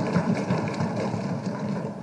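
Many members thumping their desks in applause: a dense, steady rattle of knocks that tails off near the end.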